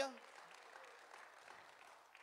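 Faint scattered applause from a congregation, following the tail of a man's "Hallelujah" at the very start.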